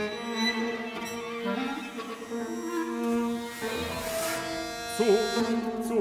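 Instrumental passage of a contemporary chamber ensemble: held bowed-string notes with piano, and wavering, sliding string tones about five seconds in.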